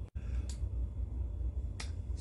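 Two short, sharp clicks, one about half a second in and a slightly fuller one near the end, over a steady low hum. The sound cuts out for a moment just after the start.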